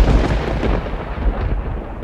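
Thunder-like rumble sound effect: a loud, deep, crackling rumble that hits just before the start and eases off slightly.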